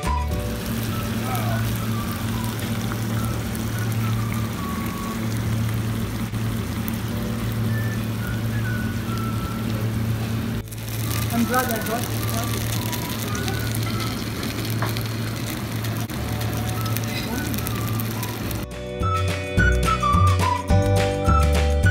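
Restaurant room ambience: a steady hum and hiss, with indistinct voices and faint background music. The sound briefly drops out at a cut about halfway through.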